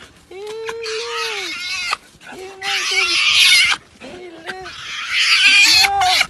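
Spotted hyena making excited greeting calls: a drawn-out whining squeal about a second long near the start, then shorter squeals. Between the squeals come loud, harsh, breathy grunting sounds.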